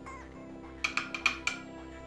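About five quick, sharp clinks, a little under a second in, of a small vial of vanilla essence tapped against the rim of the Thermomix lid opening as it is emptied into the bowl. Steady background music underneath.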